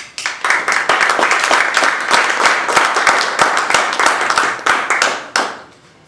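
Audience applauding: many hands clapping densely, dying away about five and a half seconds in.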